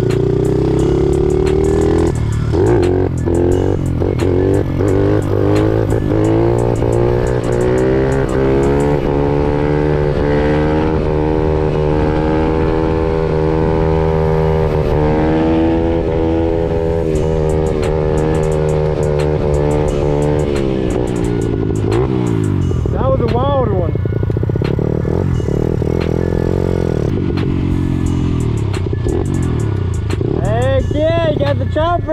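Honda CRF50 pit bike's small single-cylinder four-stroke engine running under way, its pitch rising and falling as the throttle is opened and eased.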